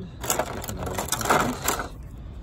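Clear plastic blister packaging crinkling and crackling as it is handled and an action figure is pulled out of it, a steady run of crackles that stops near the end.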